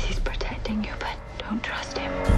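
A person whispering over a quiet music bed.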